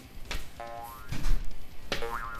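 A short comic sound effect: a sharp click, then a brief ringing twang lasting about half a second, followed by a soft low thump.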